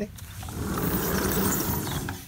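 A sliding patio door rolling along its track, a steady rumbling scrape lasting about a second and a half.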